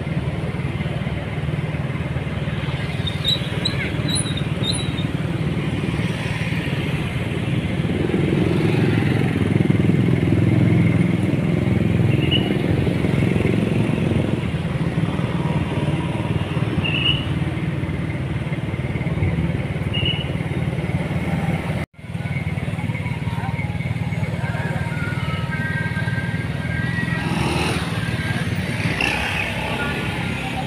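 Steady city street traffic: motorcycles and cars passing in a continuous stream, loudest around ten seconds in. The sound drops out for an instant a little past twenty seconds in.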